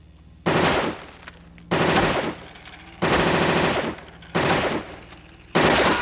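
Film sound effect of RoboCop's Auto-9 machine pistol firing in five bursts, one about every second and a quarter. Each burst is a rapid rattle of shots with a ringing echo that dies away between bursts.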